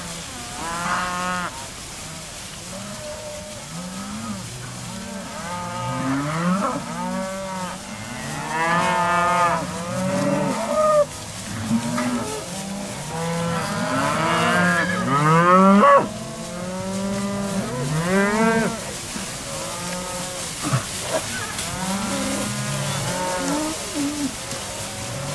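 A herd of cattle mooing, many calls overlapping and following one another without a break; the loudest calls come about 9 seconds in and again from about 14 to 16 seconds.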